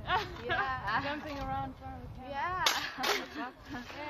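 Long-handled shovels digging into turf and soil, with two sharp strikes of a blade on the ground about two and a half seconds in, a third of a second apart.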